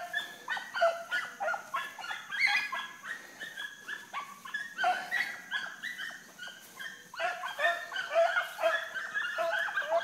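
Pack of rabbit hounds giving mouth while running a rabbit: rapid, overlapping high-pitched yips and barks, several a second. The chorus thins for a few seconds mid-way and swells again about seven seconds in.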